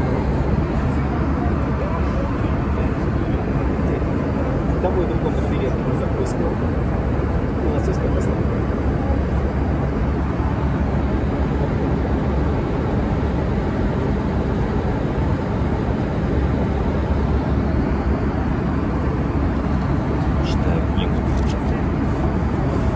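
Steady airliner cabin noise, a constant low rumble and rush of air, with a few faint light ticks over it.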